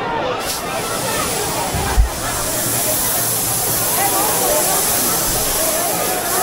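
Hand-held correfoc fireworks spraying sparks: a loud steady hiss sets in about half a second in. Crowd voices run underneath, with a single thump about two seconds in.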